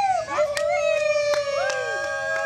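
Several people howling long, held "woo" calls together, the pitches overlapping and sliding slowly down, with a few sharp clicks scattered through.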